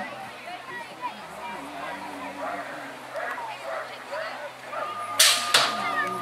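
Background voices, then near the end a steady tone sounds and a loud double clang follows as the BMX start gate drops, with a second crack just after the first.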